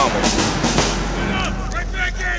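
People talking over background music, with the end of a man's shouted word at the start.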